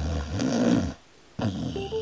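A sleeping boxer dog making low, rumbling vocal noises in two spells, with a short silence about a second in.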